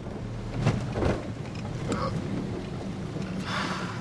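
Steady low rumble of engine and road noise heard inside a moving car's cabin, with a couple of soft bumps about a second in.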